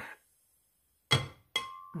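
Two clinks on a glass blender jar, about half a second apart, as sugar is tipped into it. The second clink leaves a brief, clear ringing tone.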